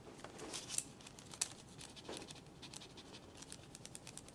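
Faint, irregular scratching and paper rustle of the end of a Sharpie marker rubbed over tracing paper, burnishing a drawing down to transfer its lines onto the paper beneath.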